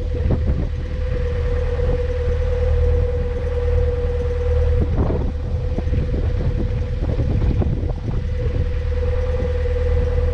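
Narrowboat diesel engine running slowly, a steady low rumble with a steady hum over it. Occasional gusts buffet the microphone.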